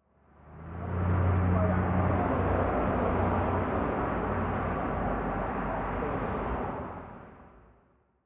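Outdoor street ambience with the low hum of a vehicle engine, faded in at the start and faded out near the end.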